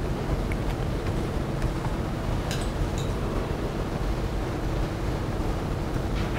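Steady room hiss and hum, with a few faint, sharp clicks from a laptop being operated.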